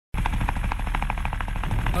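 Helicopter rotor chop: a rapid, even beat of blade pulses, about eight a second, over a low rumble. It cuts in abruptly from silence.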